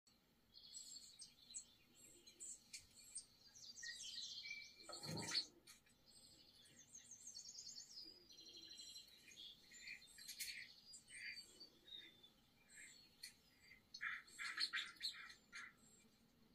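Small birds chirping and trilling, played back through a television's speakers, with many short high notes and quick trills throughout. A brief louder sound about five seconds in.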